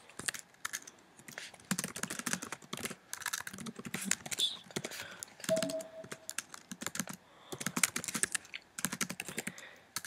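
Typing on a computer keyboard: runs of quick key clicks broken by short pauses, as a line of code is entered.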